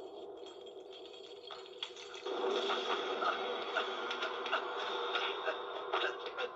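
Movie soundtrack played through a television and picked up in the room: a steady droning backdrop that gets louder a little over two seconds in, with a run of short sharp sounds as a fight begins.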